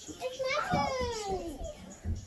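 A child's voice giving one drawn-out call that falls steadily in pitch, with no clear words.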